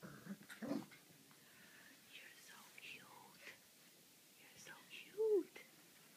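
Quiet, mostly whispered human voices with scattered faint sounds, and one short, louder voiced sound that rises and falls in pitch about five seconds in.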